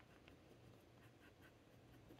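Faint scratching of a fountain pen's broad steel nib on paper, a run of short, irregular strokes.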